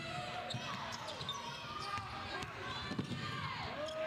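Basketball bouncing on a hardwood court, a few sharp strikes, over the steady noise of a crowd and voices in an arena.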